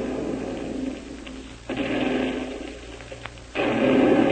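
Radio-drama sound effect of time bombs exploding: a sudden rumbling blast about a second and a half in that dies away, then a second, louder blast near the end.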